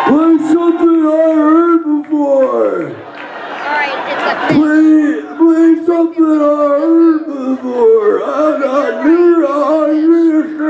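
A man's voice wailing wordlessly through the stage PA in long held notes, with a long downward swoop about two to three seconds in.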